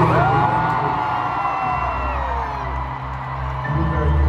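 Live stadium concert sound amplified by the PA, in which the band thins out. Over it, a single long high-pitched 'woo' rises quickly and then slides slowly downward for about two and a half seconds. The heavy bass comes back near the end.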